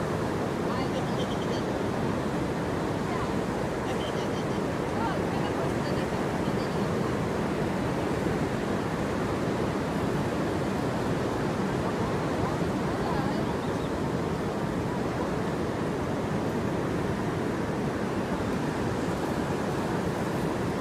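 Ocean surf breaking on a sandy beach: a steady, even wash of wave noise, with faint voices in the distance.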